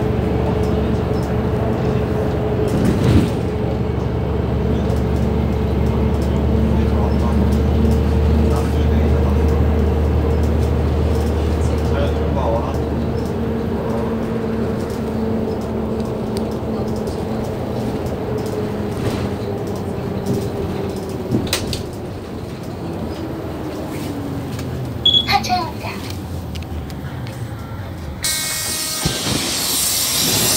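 City bus heard from inside, its engine and drivetrain running with a steady whine. The whine falls in pitch as the bus slows, from about two-thirds of the way in. Near the end comes a loud burst of compressed-air hiss.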